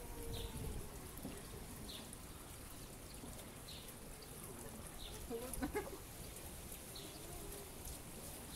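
A small bird chirping faintly, single short high chirps about every one and a half seconds, over quiet outdoor background hiss.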